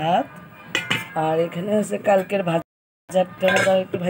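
Dishes and metal pots clinking and knocking while a woman talks. The sound drops out completely for a moment a little past halfway.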